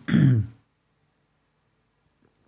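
A man clears his throat once, a short voiced sound falling in pitch, in the first half-second.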